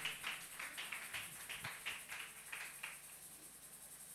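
Congregation clapping, faint and irregular, thinning out and dying away about three seconds in.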